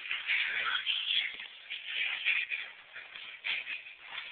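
Rustling of blankets and clothing in irregular bursts.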